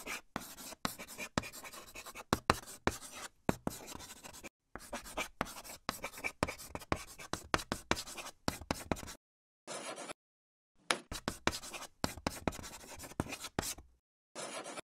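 Chalk writing on a chalkboard: runs of quick scratchy strokes, with short pauses between words and a longer break partway through.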